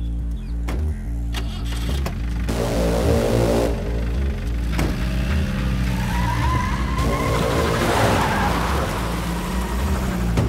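Jeep engine revving as it pulls away hard across a dirt lot, with the tyres throwing up dirt, over a film music score.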